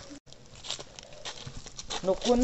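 Footsteps on a dry dirt path: a few irregular soft taps and scuffs over faint outdoor background, with a brief dropout in the sound just after the start.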